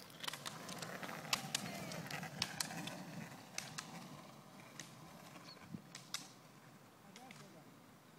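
Roller-ski pole tips striking the asphalt in pairs about once a second, over the low rumble of roller-ski wheels on the road. Both fade as the skiers move away.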